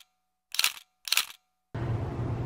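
Two camera-shutter clicks about half a second apart, set into dead silence as an editing sound effect over a still photo. A steady background hiss of outdoor ambience comes in near the end.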